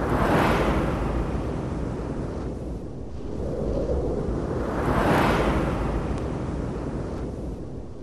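Intro sound effect: two long rushing whooshes, one right at the start and one about five seconds in, each swelling and then fading, over a deep low rumble that dies away near the end.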